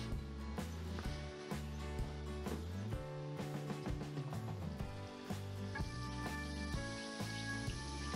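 Background music with a steady beat and bass line.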